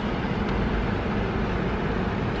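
Steady hum and hiss inside a car's cabin as the car pulls out of a parking lot.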